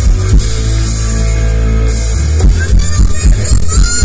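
Live rock band playing through a PA: electric guitar over a held low bass note, with drum hits coming in about halfway through.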